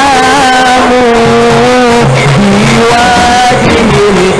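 Live musik patrol: a man singing in long held, wavering notes that glide between pitches, over a non-electric ensemble of drums and bamboo percussion.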